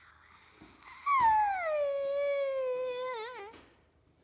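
A person's high-pitched, drawn-out wail, starting about a second in, sliding down in pitch, then held, and wavering just before it stops about two and a half seconds later.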